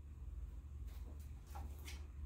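Faint low room hum with a few soft rustles of a plush puppet and a picture book being handled, about a second in and again near the end.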